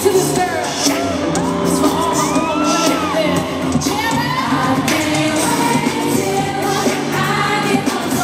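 A woman singing live into a microphone, with sliding, bending vocal runs in the first half, over a pop band's music with held bass notes and a steady beat, heard through the arena's sound system.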